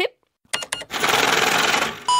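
Segment-transition sound effect: after a brief silence, a few quick clicks, then about a second of dense mechanical rattling.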